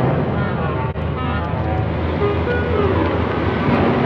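Vintage car's engine running as the car rolls along the road, a steady low hum with tyre and road noise.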